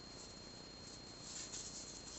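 Faint soft rustle of yarn being worked with a crochet hook, a little louder for a moment in the second half, over low background hiss with a steady high-pitched whine.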